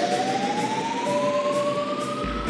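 Techno from a DJ set in a breakdown: a single siren-like synth tone slowly rises in pitch over a hissy wash, with no kick drum underneath.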